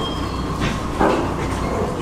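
Antique stationary engines running steadily, a low rhythmic chugging, with a single thump about a second in.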